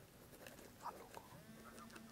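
Near silence: faint background ambience with a few brief, indistinct faint sounds.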